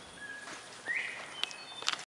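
Outdoor ambience with a few bird chirps: a short whistled note early, a rising chirp about a second in, and brief high notes later. Two sharp clicks come near the end.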